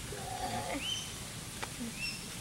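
Outdoor bush ambience with birds calling: a short wavering call near the start, then brief rising whistles about a second in and again at the end.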